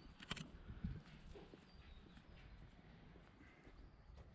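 Faint footsteps of a person walking on a paved road, with a couple of sharper clicks in the first second.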